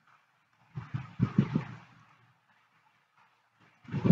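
A person's low voice murmuring a few syllables about a second in, with near silence for the rest.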